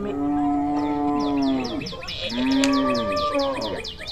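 Goat bleating: two long calls, the second starting about two seconds in, over a fast, steady series of high chirps.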